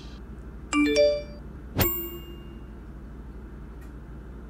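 Two phone messaging notification tones: a quick rising three-note chime about three-quarters of a second in, then a single bright ding about a second later that rings out briefly.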